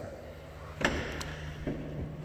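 Power liftgate of a 2021 Dodge Durango closing and latching shut, a single sharp thud about a second in, followed by a low steady hum.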